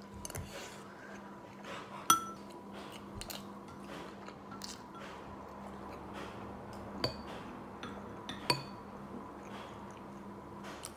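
Metal spoon clinking against a ceramic bowl while eating: three sharp, ringing clinks, the loudest about two seconds in and two more near the end, with soft eating sounds between them over a faint steady hum.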